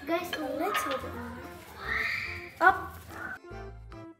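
Girls' voices talking and exclaiming, with a high drawn-out cry about two seconds in, over light children's background music.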